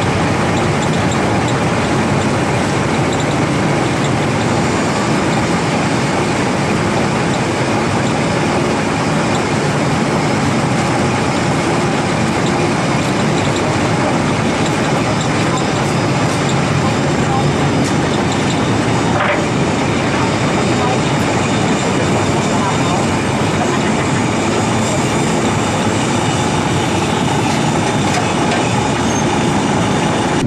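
A river car ferry's engine running steadily while under way: a loud, even drone that stays the same level throughout.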